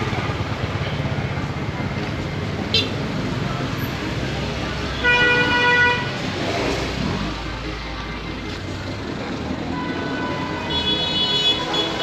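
Busy street traffic noise with a vehicle horn sounding for about a second, about five seconds in. A second sustained horn-like tone starts near the end.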